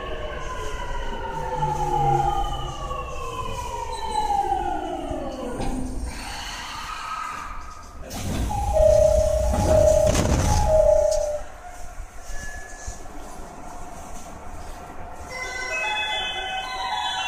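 Rinkai Line 70-000 series train's Mitsubishi GTO-VVVF inverter whining in several falling tones as the train brakes to a stop, dying away about six seconds in. A couple of seconds later a loud rush of air sounds with a door chime of three short beeps.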